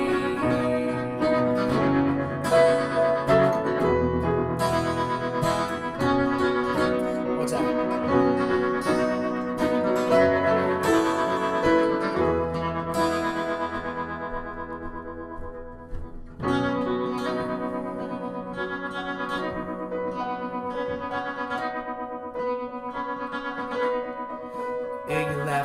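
Instrumental break with acoustic guitar and piano playing together, no singing. The music thins and quietens about sixteen seconds in, then the two instruments come back in together.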